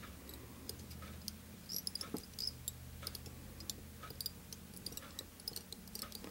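Faint, irregular light clicks and ticks of fly-tying handling, fingers and tying thread working hackle fibres onto a hook held in a vise, over a low steady hum.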